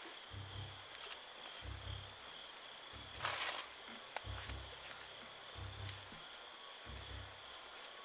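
Night insects chirping steadily, under a slow, low throbbing beat that comes about every second and a quarter, with one brief rustling hiss about three seconds in.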